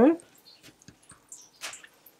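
A voice trailing off at the very start, then faint scattered clicks and rustles of a stiff clear acetate piece and a bone folder being handled; the sharpest click comes about one and a half seconds in.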